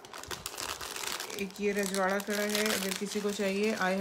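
Clear plastic jewellery bag crinkling as a bagged kundan bangle is picked up and handled: dense crackling at first, then on and off under a woman's voice from about halfway through.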